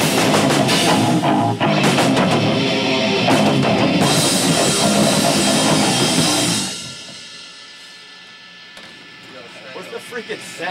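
A live hardcore punk band playing fast and loud: pounding drum kit, distorted electric guitar and shouted vocals. The song stops abruptly about seven seconds in, leaving only a faint steady hum from the amps.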